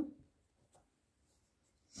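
Faint scratching of a pen on notebook paper as an equation label is written, with a few short strokes in an otherwise very quiet room.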